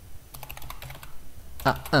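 Typing on a computer keyboard: a quick run of keystrokes lasting about a second and a half.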